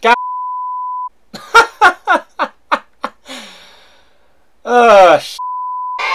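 A steady one-second censor bleep, then a quick run of about seven short sharp sounds, a brief hiss, and a loud man's shout, cut off by a second, shorter bleep near the end.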